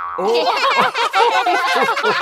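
Cartoon sound effects: a run of short, wobbling, springy boing-like pitch glides, mixed with brief exclamations from the animated characters as they tumble into a pile.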